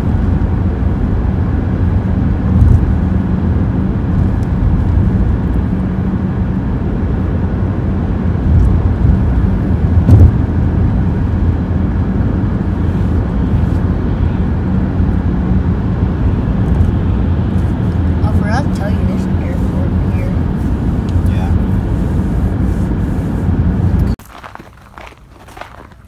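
Car cabin noise while driving: a loud, steady low rumble of road and engine noise that cuts off abruptly about two seconds before the end.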